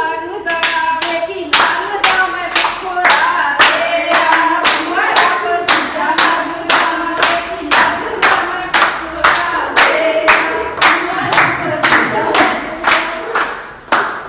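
A group of people singing a Punjabi gidha folk song to steady hand clapping, about two claps a second. The clapping starts about half a second in and is louder than the singing.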